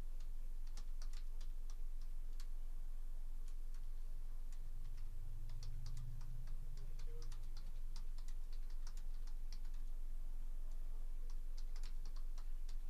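Typing on a computer keyboard: irregular clusters of light key clicks over a steady low hum.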